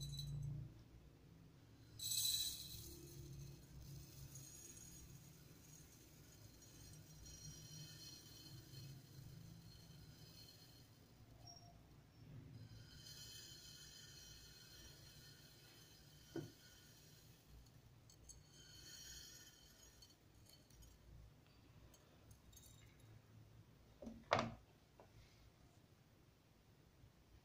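Dry rice grains trickling from one glass jug into another, a faint hiss that comes in several spells. A single glass click comes about two-thirds of the way through, and a louder double knock of a glass jug being set down on the tray comes near the end.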